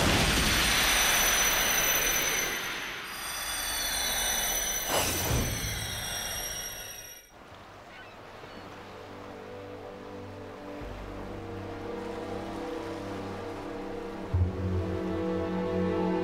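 Loud sci-fi battle sound effects, a rushing noise with falling whistling tones, cut off suddenly about seven seconds in. Quiet sustained background music follows.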